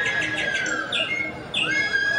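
Birdsong sound effect through a stage sound system: fast chirping trills over held whistled notes, one gliding down, with a brief lull about a second and a half in.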